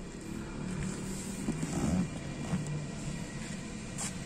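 Low steady hum of a vehicle running in the background, with a few faint small noises.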